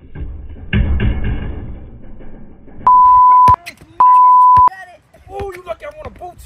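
Two loud, steady beeps of one pitch, each lasting a little over half a second and about half a second apart: an edited-in censor bleep laid over speech. A voice shouts about a second in.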